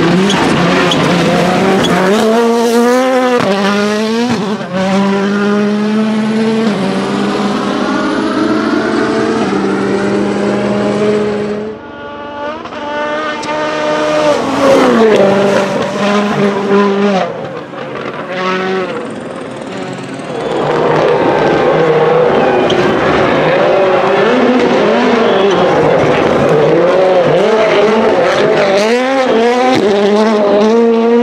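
Ford Fiesta WRC rally car's turbocharged 1.6-litre four-cylinder engine at full throttle in several passes, its note climbing and dropping again and again with gear changes.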